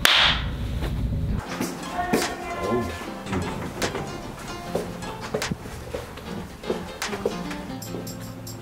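A sharp hand clap with a whooshing swish right on it, then background music with a light beat.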